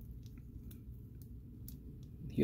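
A few faint clicks of a plastic NECA Shredder action figure being handled and posed, over a low steady room hum.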